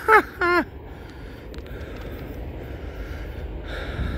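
A freight train rolling past: a steady low rumble of the passing train, opened by a brief excited vocal sound at the very start.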